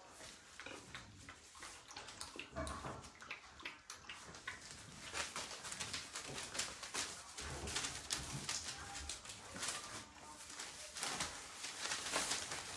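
Young puppies moving about and making small dog sounds, with many scratchy clicks and rustles from their movement.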